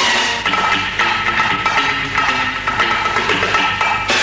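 Instrumental opening theme music of a 1970s Egyptian television show, with percussion, and a bright swell at the start and again at the end.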